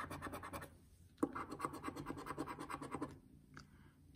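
A coin scratching the coating off a scratch-off lottery ticket in quick back-and-forth strokes. There is a short pause about a second in, and the scratching stops about three seconds in.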